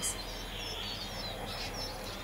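Small birds chirping, a string of short high slurred notes, over a steady low outdoor hum.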